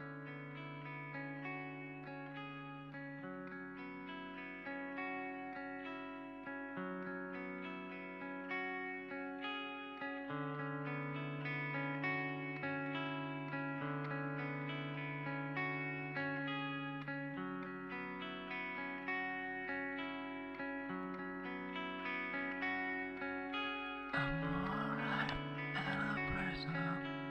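Instrumental music: a guitar picking fast repeated notes through effects, over long low notes that change every few seconds, slowly building in loudness. A noisier layer with sliding pitches comes in near the end.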